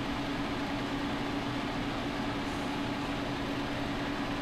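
Steady machine hum with one constant low tone, unchanging throughout.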